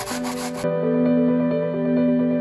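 Soft instrumental background music with held notes. For the first half-second or so it plays under the rasping strokes of raw potato on a plastic grater, which cut off abruptly.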